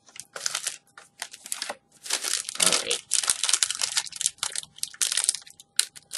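Foil snack bag crinkling and crackling in the hands in irregular bursts as it is handled.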